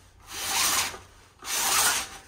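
A fabric roller blind on a patio door being pulled up in two strokes, each a rubbing rush of under a second.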